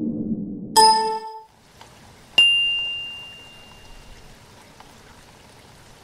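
Subscribe-animation sound effects: a multi-note chime about a second in as a low music bed fades out, then a single bright notification-bell ding about two and a half seconds in that rings out for a second and a half.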